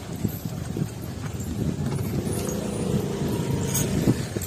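Iron chains on a walking elephant clinking and knocking with its steps. About two seconds in, a low steady hum joins them.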